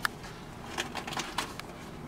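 Small cardboard box being worked open by hand: a sharp click at the start, then a few short scrapes and crackles of cardboard about a second in.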